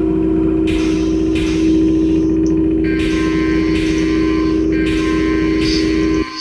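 Simulated conveyor-line machinery of a virtual box-sorting plant running with a steady hum and rumble. About halfway through, a steady higher alarm tone joins as the line faults on a wrong part at the output.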